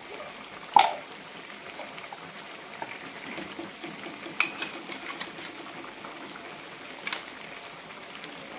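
A pan of vegetable curry bubbling steadily on a gas stove, with a few metallic clinks of a steel spatula against a steel kadhai. The loudest is a ringing clink about a second in, and smaller taps come around the middle and near the end.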